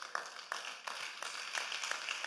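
Scattered, fairly quiet hand clapping from a congregation, irregular individual claps rather than a full round of applause.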